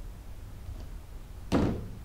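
One sharp knock about one and a half seconds in, as a PVC toilet flange is set down on the workbench, over a faint steady low hum.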